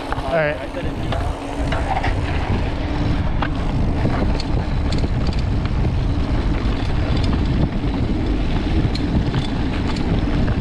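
Wind buffeting the microphone and mountain bike tyres rolling over a dirt and gravel road, with scattered small clicks and rattles from the bike. A short voice in the first second.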